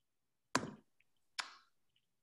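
Two short, sharp clicks a little under a second apart, in a quiet pause.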